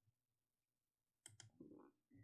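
Near silence, then a little past halfway two quick sharp clicks, followed by a short muffled rustle, as of something being handled on a desk.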